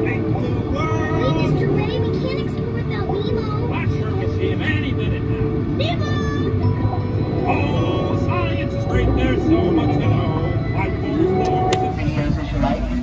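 A submarine dark ride's onboard soundtrack: music with high-pitched cartoon fish voices chattering in many short phrases, over a steady low rumble from the submarine.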